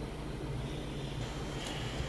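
Steady background noise: a low hum with a faint even hiss, and no distinct handling sounds.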